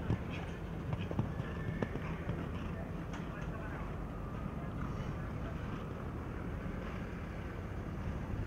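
Steady low background hum of an outdoor arena, with a few faint thuds of a horse's hooves cantering on sand.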